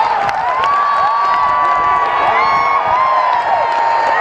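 A large crowd cheering and yelling, many voices overlapping in high shouts, one long held yell among them in the first half, with a little clapping.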